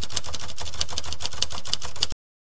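Typewriter sound effect: a fast run of key clacks, about seven a second, over a low hum.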